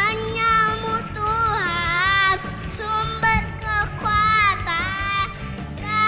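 A small boy singing an Indonesian worship song into a microphone over instrumental accompaniment, in held notes that waver in pitch, with short breaths between phrases.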